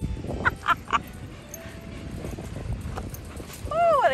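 A dog at play gives three quick, short barks about half a second in, and a higher rising-and-falling call near the end.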